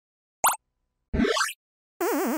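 Cartoon water-drop sound effects: a short plop about half a second in, then a quick upward-sweeping bloop about a second in.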